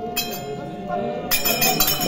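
Jingling metal percussion from the stage accompaniment: a few bright strikes about a quarter second in, then a quick, continuous ringing rhythm from a little past halfway, over a steady held musical tone and voices.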